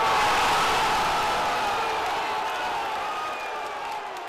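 Football stadium crowd cheering a goal: a sudden swell of shouting as the ball hits the net, slowly fading.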